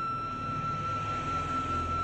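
Background devotional music: a flute holds one long, steady note.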